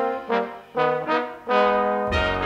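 Big band brass section, trombones and trumpets, playing a series of short chords, about four in two seconds.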